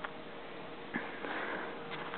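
A soft, short sniff about halfway through, with a small click about a second in, over faint room hiss.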